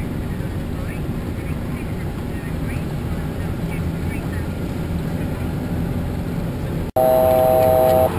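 Steady cockpit noise of a Bombardier Challenger 605 business jet in flight: a low rumble of airflow and engines. Near the end the sound cuts out sharply, and a louder steady tone of several pitches follows for about a second.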